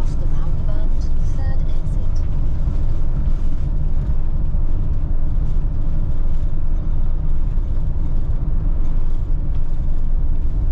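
Steady low road and engine rumble heard inside the cab of a moving camper van at cruising speed.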